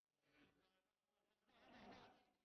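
Near silence, with a very faint sound that swells twice, the second time more strongly.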